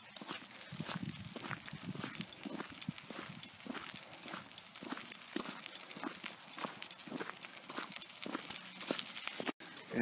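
Footsteps of a person walking at a steady pace, each step a short scuffing tick on pavement and then dirt. There is a brief dropout near the end.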